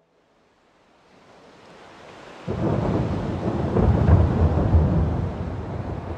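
A thunder-like effect between two tracks: a rush of noise swells up and breaks into a sudden loud, rumbling crash about two and a half seconds in, then slowly fades.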